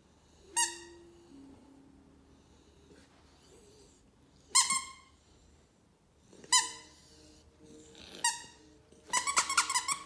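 Squeaky plush hedgehog dog toy squeaking: four single short squeaks a couple of seconds apart, then a quick run of squeaks near the end.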